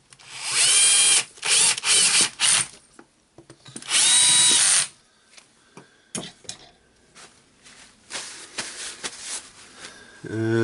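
Cordless screwdriver driving two screws into the gear-housing cover of a rotary hammer. The motor whine rises as it spins up on the first screw, followed by a few short bursts as the screw is run down. A second, shorter run comes about four seconds in.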